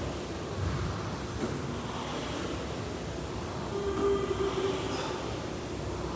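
Steady rushing gym room noise, with heavy breaths from a man under a loaded barbell during back squats swelling about every second and a half, and a brief low hum about four seconds in.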